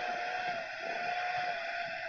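A steady mid-pitched hum, wavering slightly, over a faint even hiss; the hum fades out about three-quarters of the way through.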